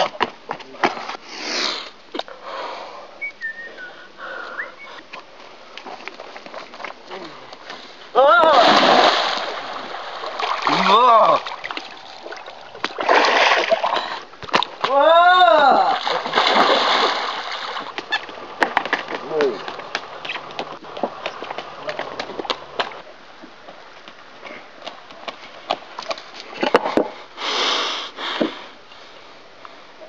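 Water splashing loudly in a swimming pool several times as people plunge or are pushed in, with the biggest splashes about a third of the way in, around halfway and near the end. Voices yell in between, rising and falling in pitch.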